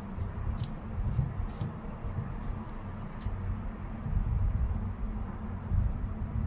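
A faint snip of small metal embroidery scissors cutting crochet yarn about half a second in, then a few soft clicks and rustles of the yarn and small crocheted piece being handled, over a low steady background rumble.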